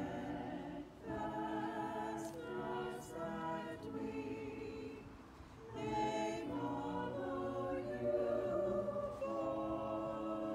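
Three vocalists, a man and two women, singing together in slow held phrases, with a short break between phrases about five seconds in.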